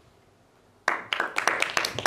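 Audience applauding: many hands clapping, starting suddenly about a second in after a short quiet.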